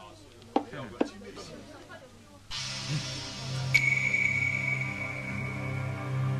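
A few sharp clicks over a quiet room, then a suspenseful film score cuts in abruptly about two and a half seconds in: a steady low synth drone, with a high held tone joining about a second later.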